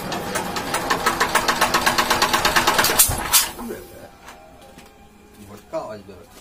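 Small single-cylinder diesel engine of a generator set running with a fast, even knocking beat that grows louder, then a loud sharp bang about three seconds in, after which the engine sound falls away sharply. The engine has a suspected gasket problem.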